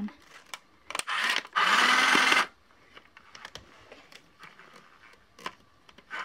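Toy sewing machine's small motor running in two short bursts about a second in, the second under a second long and cutting off suddenly, as it is switched on and off to find the switch. Faint clicks of handling the plastic machine follow.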